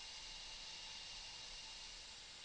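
Faint steady hiss with a thin, steady high-pitched hum: quiet room tone with no distinct event.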